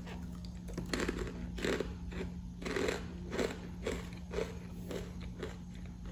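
A person chewing a mouthful of crunchy puffed curl snacks, each bite giving a short crunch, about two or three a second.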